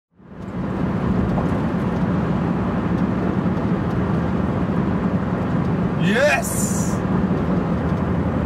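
Steady engine and road drone inside the cab of a Cummins diesel pickup cruising, fading in at the start. About six seconds in, a short, steeply rising vocal whoop cuts across it.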